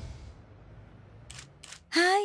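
A swelling film sound effect fades out in the first half second, then a camera shutter clicks twice, about a second and a half in.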